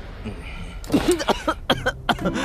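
A person coughing in several short, separate bursts, starting just under a second in.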